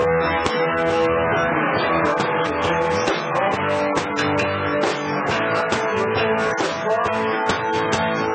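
Live country band playing an instrumental passage of the song, with guitars to the fore over bass and drums.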